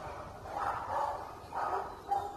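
A dog vocalizing twice: a longer call about half a second in and a shorter one near the end.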